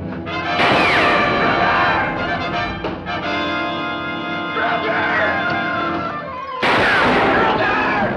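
Two gunshots, one about half a second in and one near the end, each followed by a falling whine, over dramatic TV-score music.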